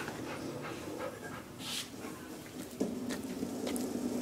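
A dog panting with its mouth open.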